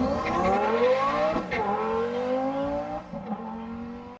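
A car engine accelerating hard, its revs climbing, dropping at an upshift about a second and a half in, then climbing again before fading away.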